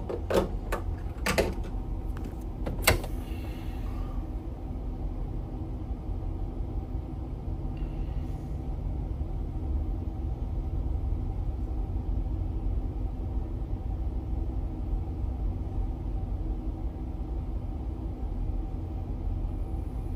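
Steady low drone of a towboat's diesel engines heard from the pilothouse, with a few sharp clicks in the first three seconds.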